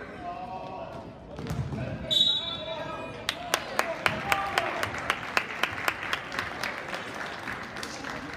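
A basketball dribbled on a gym floor, even bounces at about four a second starting about three seconds in, over crowd voices in the gym. A short referee's whistle comes just before, about two seconds in.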